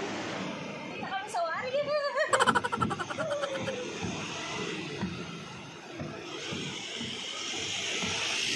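A person's voice makes short sliding, pitched vocal sounds in the first few seconds. After that a steady rushing noise builds toward the end, typical of a vehicle approaching along the road.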